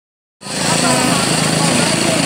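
An engine running steadily under several people talking and calling out, starting suddenly just under half a second in.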